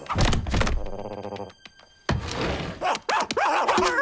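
Cartoon sound effects: a heavy thunk as a raccoon lands in a fireplace, then a short, rapidly pulsing buzz. From about two seconds in come a cartoon character's wordless vocal sounds, rising and falling in pitch.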